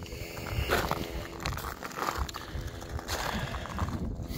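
Footsteps crunching on cooled, cracked lava rock, a step roughly every three-quarters of a second, over wind rumbling on the microphone.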